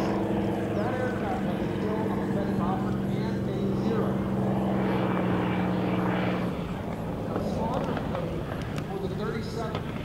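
Supermarine Spitfire Mk IX's Rolls-Royce Merlin V12 engine running at a steady low-power note as the fighter comes in to land with its gear down. The note drops a little about six and a half seconds in.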